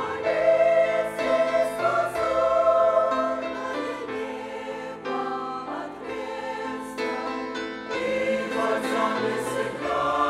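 Mixed choir of men's and women's voices singing a hymn together in sustained, held chords.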